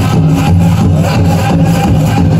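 Pow wow drum and singers: a big drum struck in a steady, even beat, several strokes a second, under a group of voices singing a dance song.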